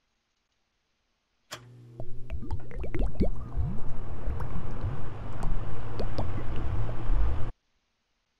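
Stock sound effects of bubbles being blown: many quick rising bloops and small pops over the steady hum of an electric fan. It starts suddenly about a second and a half in and cuts off abruptly near the end.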